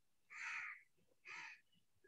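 Two faint, short harsh bird calls about a second apart, over near quiet.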